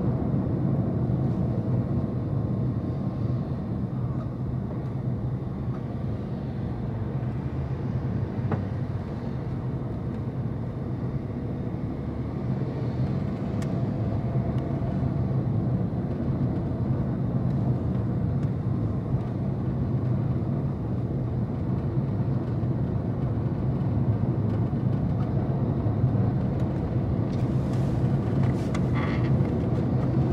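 Steady low rumble of a car driving along a city street: engine and tyre noise. A few brief ticks come near the end.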